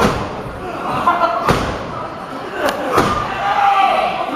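Sharp thuds of wrestlers hitting each other and landing in a wrestling ring: four impacts, one a second and a half in and two close together near the end.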